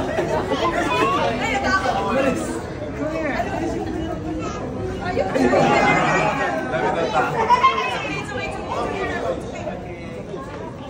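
Several people talking over one another: chatter with no single clear voice.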